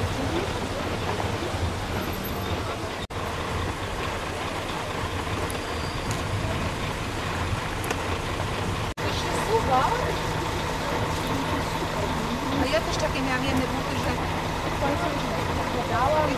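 Street sound with a vehicle engine running steadily, joined by indistinct voices of people from about nine seconds in. The sound drops out briefly twice.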